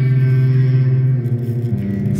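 Live band music: one low note held with many overtones, with no drum hits, moving to a higher note near the end.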